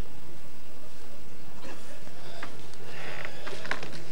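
A steady low hum with hiss, broken by a few faint clicks and a brief faint murmur of voices about three seconds in.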